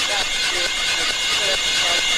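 Breakdown in a techno track with no kick drum: a steady hiss and high held synth tones, over which short warbling vocal-like snippets come and go.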